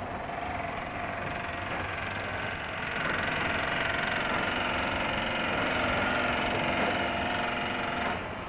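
Construction-site machinery running steadily, a droning whine with several held pitches that step up slightly about three seconds in. It is heard through the narrow, dull sound of an early 16 mm film soundtrack.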